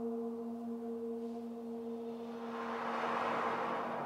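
A French horn holds one steady low note, heavily reverberant through the electronic processing, played to imitate a humpback whale's call. About two and a half seconds in, a rushing breath sound swells up over the note and fades within a second or so.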